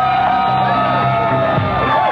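Music: one long held note over a steady, repeating bass line, moving into a new phrase about a second and a half in.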